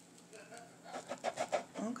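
A woman's voice making short, wordless, pitched murmuring sounds for about a second and a half, ending in a spoken "okay".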